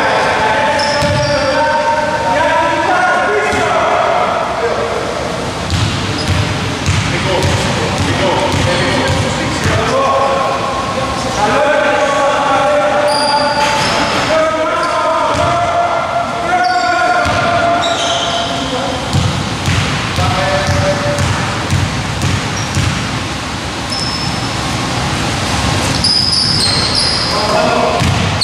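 A basketball being dribbled on a hardwood gym floor, with people talking over it.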